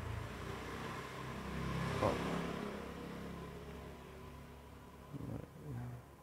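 A passing motor vehicle's engine, growing louder to a peak about two seconds in and then fading away. There is a sharp click at the loudest point and two short knocks near the end.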